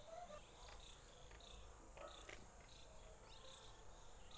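Near silence: faint room tone with scattered soft high chirps and a few small clicks.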